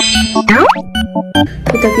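Edited-in background music with a quick rising glide sound effect about half a second in, followed by sparser notes.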